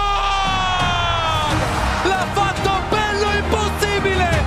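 An Italian TV football commentator holds a long goal-call shout of the scorer's name, Lookman, falling in pitch and fading out about a second and a half in. Background music plays under it.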